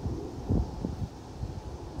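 Wind buffeting the microphone outdoors: an uneven low rumble that swells briefly a couple of times.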